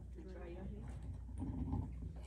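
Faint murmured prayer voices over a steady low electrical hum from the sound system.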